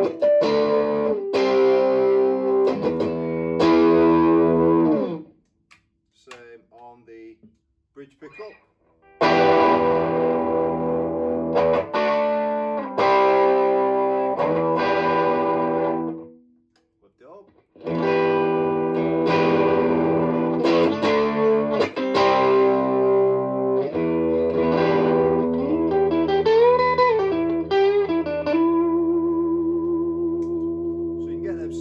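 Gibson Les Paul Studio electric guitar played through an amp with its humbucker split to single coil by the push-pull volume pot: chords and picked phrases, twice dropping out briefly, with a bent note near the end and a final note left ringing.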